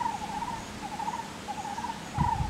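A small animal's chirping call, short trills repeated over and over at one steady pitch.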